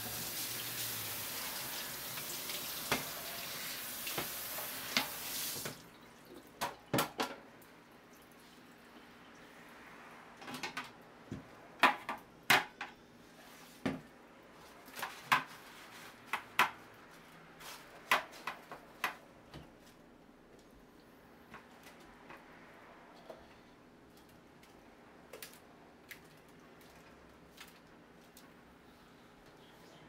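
Kitchen tap running into a stainless steel sink for about the first six seconds, then turned off. After that comes a string of sharp knocks and clatters of kitchen utensils and containers being handled, loudest around the middle, then only a few faint clicks.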